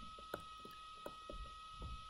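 Faint, scattered clicks and light scratches of a stylus on a tablet screen as a word is handwritten, over a steady faint high-pitched whine.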